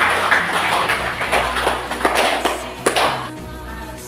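A class of students clapping together for about three seconds, over background music that carries on after the clapping stops.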